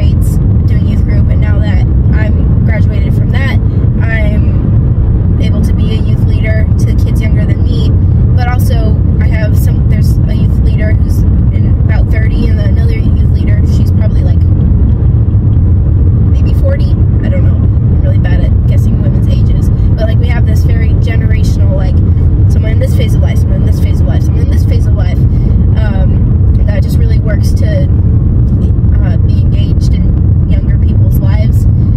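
Steady low rumble of road and engine noise inside a car's cabin while it is driven, heavy enough to sit under a person talking.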